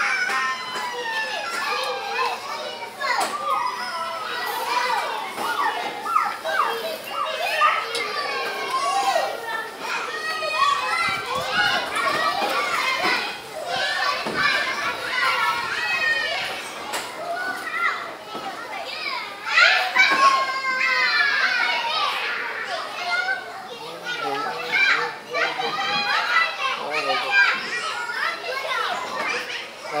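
Many children's voices chattering and calling out at play, overlapping continuously, with louder shouts about eight and twenty seconds in.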